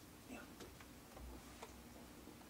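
Near silence: room tone with a few faint clicks and a soft spoken "yeah" near the start.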